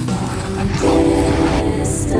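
Outro jingle for a channel end card: a whooshing swell, then a held chord of several steady tones about a second in.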